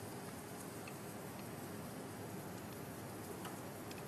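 Faint steady background hiss with a few light, scattered clicks: chopsticks touching a soup pot as seaweed is stirred in.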